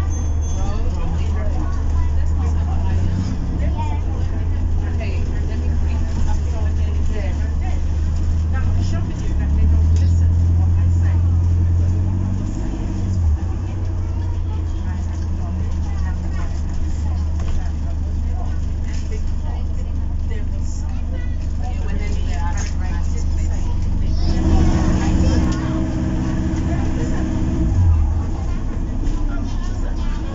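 Interior sound of an Enviro400 MMC hybrid double-decker bus with BAE Systems hybrid drive on the move: a steady low rumble from the drive and road, heavier for a few seconds about ten seconds in. Near the end a humming tone comes in for a few seconds.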